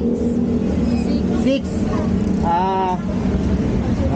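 A steady, low, engine-like mechanical hum, with a person's short voiced sound about two and a half seconds in.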